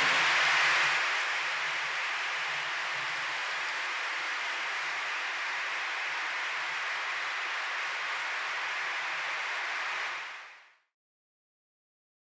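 Audience applauding steadily, fading out about ten seconds in.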